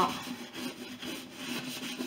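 Soft baby brush scrubbing saddle soap lather into grained Epi leather, a steady back-and-forth rubbing in repeated strokes.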